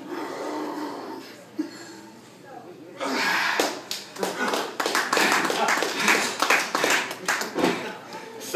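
An audience laughing, then breaking into louder clapping and laughter about three seconds in.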